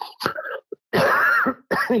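A man clears his throat once, a loud, rough burst of about half a second coming about a second in, between short bits of his speech.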